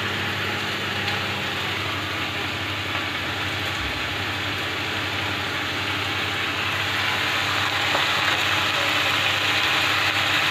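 Vegetables sizzling as they fry in a pan, a steady hiss that grows a little louder near the end, over a steady low machine hum.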